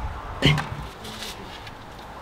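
One sharp wooden knock about half a second in, as a plywood panel is handled and set into place, followed by a few faint scuffs.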